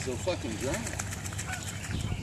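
A man's voice murmuring briefly and indistinctly in the first second, then only faint outdoor background noise.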